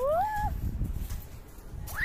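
A young child's short rising squeal at the start, then a brief higher-pitched yelp near the end, over low rumbling noise.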